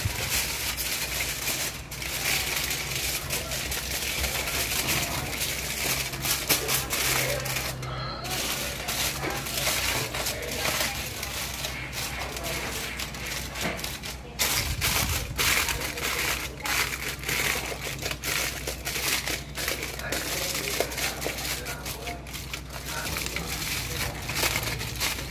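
Aluminium foil crinkling and crackling as it is folded and pressed around a large whole fish, in dense irregular crackles throughout, over a steady low hum.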